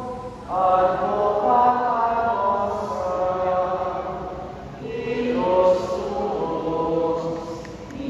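A group of voices singing a hymn in long held phrases, with a new phrase starting about half a second in and another around five seconds.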